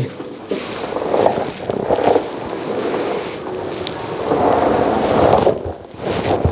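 Fabric rubbing against a clip-on lapel microphone while its wearer presses his chest down onto a person: a continuous scratchy rustle and rumble that drops away shortly before the end.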